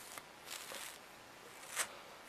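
Small wire dog comb drawn through a lock of washed sheep fleece: three brushing swishes of the teeth through the wool, the last one the loudest, just before the end.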